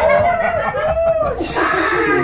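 People laughing and chuckling: a quick run of short laughs that rise and fall in pitch.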